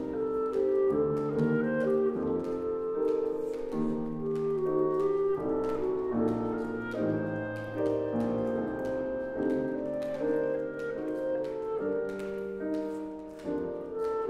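Clarinet playing a lyrical melody of held notes over grand piano accompaniment.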